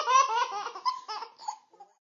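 A young child giggling: a run of short, high-pitched bursts of laughter that grow sparser and trail off near the end.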